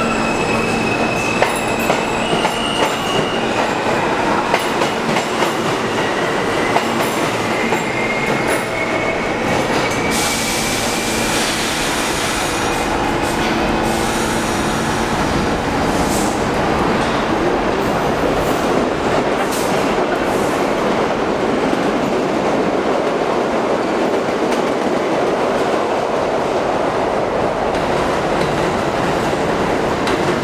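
New York City subway train pulling out of an underground station: a motor whine rises in pitch over the first several seconds. A steady rumble and clatter of wheels on rails follows, with a few brief squeals, as trains run on the other tracks.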